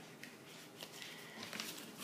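Faint rustling of paper pages being handled, with a few light clicks.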